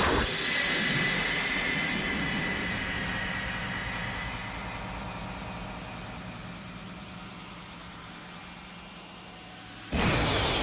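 A sustained roaring rush of noise, an anime energy or aura sound effect, with a faint high whine in the first few seconds. It fades slowly and cuts off abruptly at the end.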